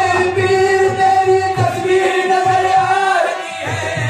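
Qawwali: male voices singing long, wavering held notes together, over a steady hand-drum beat.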